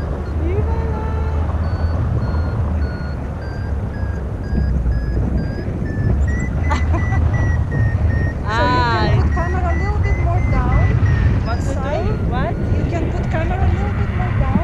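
Paragliding variometer beeping rapidly and steadily, its pitch drifting slowly higher and lower; the climb tone that signals the glider is rising in lift. Heavy wind rumble on the microphone from the flight runs underneath, with a brief voice-like sound near the middle.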